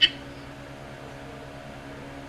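A brief vocal sound right at the start, then a steady low hum with a few faint held tones: the constant background hum of the room.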